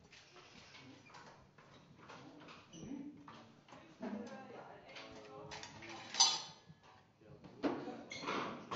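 Clattering and small metallic clinks of drum and stage gear being handled, with one sharp metallic clank about six seconds in.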